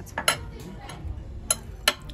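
A metal knife and fork clink and scrape on a dinner plate as meat is cut. There are three sharp clinks: one just after the start and two close together near the end.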